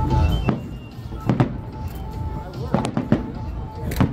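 Aerial fireworks bursting, about six sharp bangs at uneven spacing, with a quick cluster of three about three seconds in, over a low rolling rumble.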